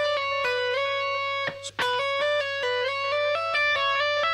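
Electric guitar playing a single-note legato line up and down the length of one string, the notes running smoothly into one another, with a short break about a second and a half in.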